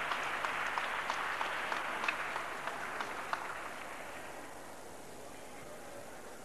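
Audience applauding, a dense patter of hand claps that dies away over the last two seconds.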